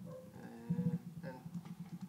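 A man's voice holding a drawn-out hesitation sound, a sustained "uhh", for about a second, then trailing off into faint murmuring.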